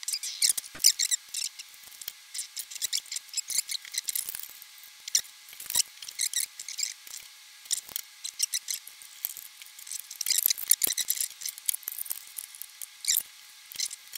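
Scissors snipping card and paper, with rustling and light clicks of a ruler and a steel bracket being handled on a workbench. The snips and clicks come in quick, uneven runs, busiest at the start and again near the end.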